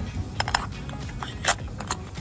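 A few sharp plastic-and-metal clicks and clacks from a combination key lock box hung on a doorknob as it is handled and its dials worked, with a cluster of clicks about half a second in and single clicks later on.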